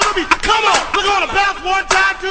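A break in a hip-hop bounce track: the bass beat drops out, leaving a group of voices shouting short, repeated calls that rise and fall in pitch, about two a second.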